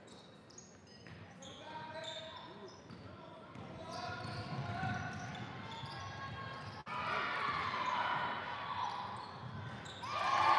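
Gym sound of a basketball game in play: a ball bouncing on the hardwood court under a mix of players' and spectators' voices echoing in the hall, getting louder in the second half.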